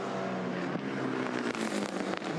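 Engine of a Tickford Ford Falcon Supercars V8 race car running at a fairly steady pitch.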